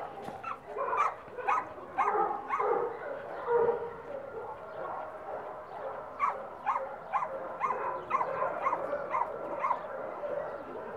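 A dog barking repeatedly, with irregular barks at first and then a quick, even run of barks in the second half.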